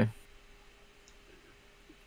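A voice trails off at the very start, then near silence with a faint steady hum and a few very faint clicks.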